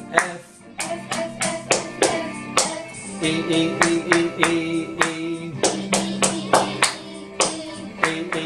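Hands clapping a steady rhythm, about three claps a second, along to a music backing track, with voices singing along.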